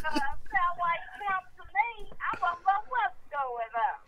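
A woman talking, her words too unclear to make out.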